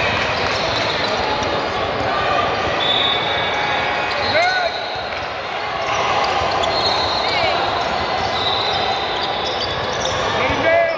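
Indoor basketball game sound: a ball bouncing on a hardwood court and sneakers squeaking, amid voices from players and spectators echoing in a large gym.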